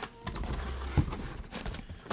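A cardboard shipping box being opened by hand: rustling and scraping of the cardboard flaps and packaging, with a sharp knock about a second in.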